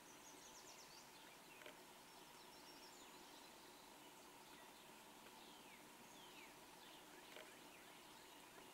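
Near silence: faint outdoor ambience with distant birds chirping now and then in short falling notes, over a faint steady hum.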